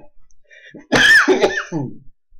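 A man clearing his throat loudly once, about a second in, lasting about a second, after a few faint short vocal noises.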